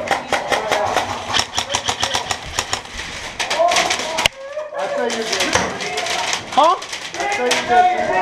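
Paintball markers firing rapidly: a fast run of sharp pops, several a second, that stops abruptly about four seconds in. Voices and shouts follow.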